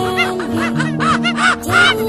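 Cheerful children's background music with a chattering, laughter-like call effect repeated over it in quick short rising-and-falling notes, loudest near the end.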